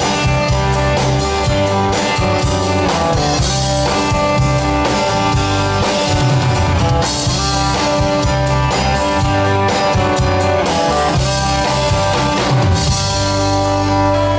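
Live band playing an instrumental passage of a rock song: drum kit, bass, electric and acoustic guitars and keyboard. Near the end the drumming stops and the band holds a ringing chord under a cymbal wash.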